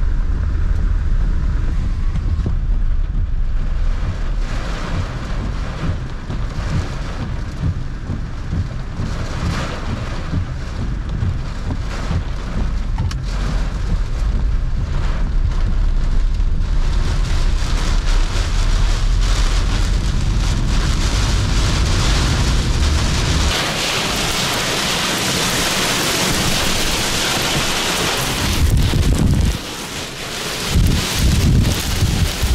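Heavy rain and strong wind beating on a vehicle in a severe thunderstorm, over a low rumble. About 17 seconds in, the hiss of the rain and wind grows louder. A few seconds later the low rumble drops away, leaving a loud, rushing hiss.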